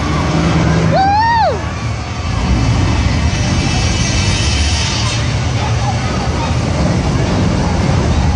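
A heavy machine engine rumbling loudly, thickening about two seconds in, with a short high whoop that rises and falls about a second in.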